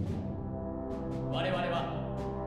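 Concert wind band playing a sustained low brass chord, with tubas in the bass; higher winds and brass swell in about a second and a half in, making the sound fuller and brighter.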